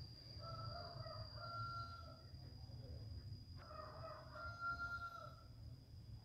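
A rooster crowing twice, each crow about two seconds long with a held note, the second following shortly after the first.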